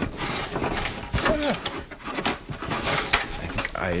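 Camera bag being handled and worked close to the microphone: a quick run of clicks, scrapes and rustles as a part of it gets stuck. A short murmur of voice comes about a second in.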